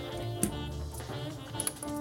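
Soft background music with held notes, and a few light plastic clicks as the Lego model is handled.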